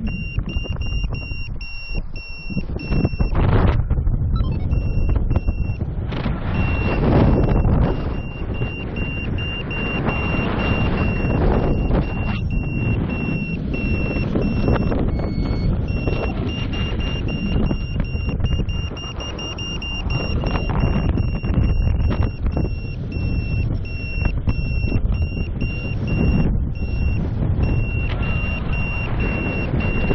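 Wind rushing over the microphone in paraglider flight, with a flight variometer beeping in a high tone repeated in short pulses and briefly lower in pitch near the middle. A steady beep like this is a variometer's climb tone, the sign of rising air.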